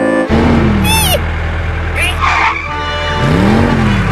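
Cartoon soundtrack of music and sound effects. A low steady rumble comes in just after the start, with short sliding, swooping tones over it and a brief noisy burst near the middle.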